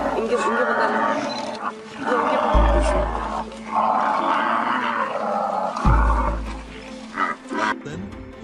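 Lion growls and roars over dramatic background music, with a deep boom about two and a half seconds in and another about six seconds in.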